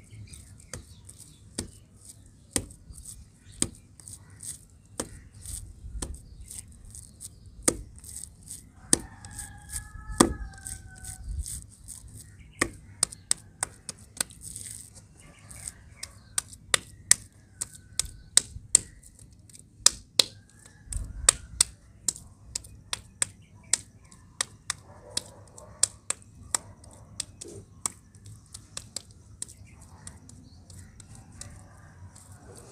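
Wet mud being squeezed and patted into a ball by hand: an irregular run of sharp wet slaps and clicks, a few each second.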